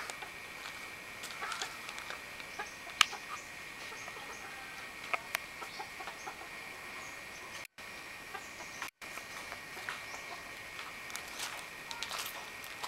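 Outdoor ambience: a steady high-pitched hum with scattered small clicks and knocks and a sharp tap about three seconds in. The sound cuts out completely for a moment twice, near the eight- and nine-second marks.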